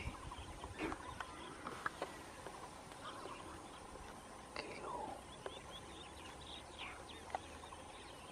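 Faint outdoor background with scattered short bird calls and chirps.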